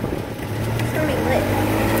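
Golf cart running: a steady motor hum that comes in about half a second in and rises slightly in pitch.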